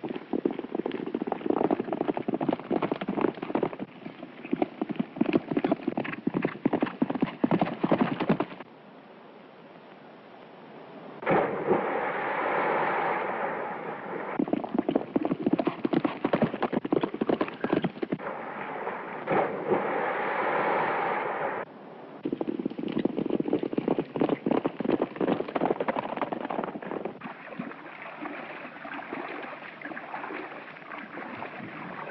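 Several horses galloping, a fast dense clatter of hoofbeats on hard ground. Partway through the hoofbeats drop away briefly, and twice a steadier rushing noise lasting a few seconds rides over them.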